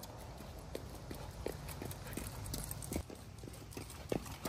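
Jogging footsteps on a concrete sidewalk, a person running in sneakers with a leashed dog, coming closer: a series of short, light knocks at about three a second.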